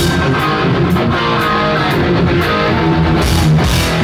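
Live rock band playing an instrumental passage: single-cutaway electric guitar playing a run of notes over bass and drums.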